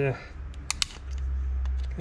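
Two sharp clicks about two-thirds of a second in, then a few fainter ticks, as a screwdriver tip works at the plastic inserts on an adaptive cruise control radar module. A low rumble swells under them in the second half.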